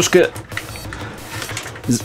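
Eurorack modular synthesizer patch playing quietly: a fast, even pattern of short white-noise clicks, clocked by LFOs.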